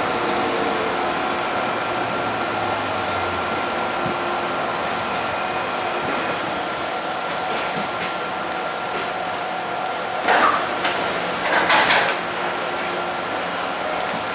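Interior of a stationary metro train: steady hum of the train's equipment with a faint steady tone. Around ten seconds in, the sliding passenger doors open with a short burst of noise, followed a second later by a longer one.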